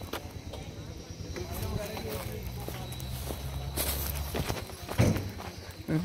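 Footsteps on a concrete path, with faint voices in the background.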